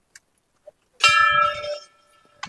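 A hanging metal temple bell struck once about a second in, ringing on with a clear tone that slowly fades.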